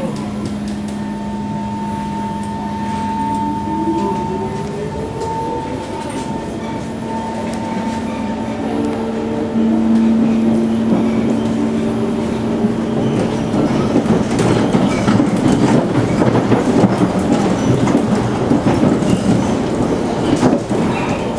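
Singapore MRT C151 train pulling away from a station, heard from inside the carriage. The traction motors whine, rising in pitch as the train speeds up over a steady hum. Rumbling, clicking wheel and rail noise then grows louder over the last several seconds.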